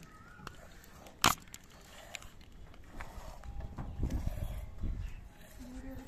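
Goat being hand-milked into a small steel tumbler: irregular squirting and handling noise, louder and rumbling in the second half, with one sharp clink about a second in.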